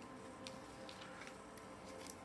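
A few faint, light ticks and taps as a deck of cards is handled on a wooden table, with long fingernails on the cards, over a faint steady hum.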